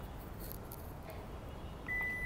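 Faint steady background noise. Just before the end, a steady high beep starts: the Toyota Fortuner's power tailgate warning beep as its close button is pressed.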